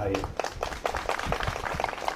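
Scattered hand clapping from an audience: a brief, irregular run of claps in a pause between spoken phrases.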